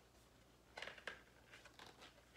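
Faint paper rustle of a picture book being handled, a short rustle about a second in and another near the end, otherwise near silence.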